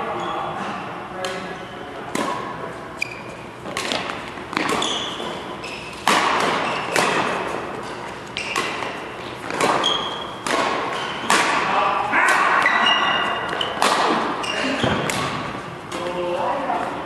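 Badminton rally: rackets striking the shuttlecock again and again, about once a second, each sharp hit ringing in a large echoing hall.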